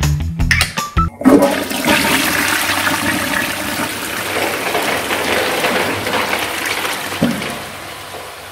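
Toilet flushing from a push-button cistern: water rushes into the bowl for about six seconds, then tails off. A short thump comes near the end.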